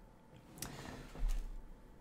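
A pause in a man's speech: near quiet, then a soft breath lasting over a second, beginning about half a second in, with a brief low bump in the middle.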